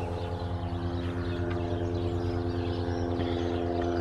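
A steady low motor drone, an even hum of a machine running at constant speed.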